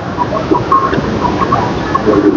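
Steady background din of a busy wholesale vegetable market, scattered with short, faint chirp-like calls.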